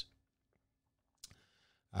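A quiet pause in a man's talk with a faint steady hum. About a second and a quarter in comes a single soft click, then a short breath just before he speaks again.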